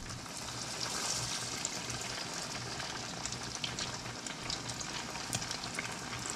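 Battered catfish nuggets deep-frying in hot peanut oil: a steady sizzle full of small crackling pops, swelling slightly about a second in.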